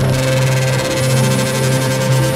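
Electronic trance music played in a DJ mix: sustained synth chords over a steady bass line, with rhythmic high percussion ticks coming in about a second in.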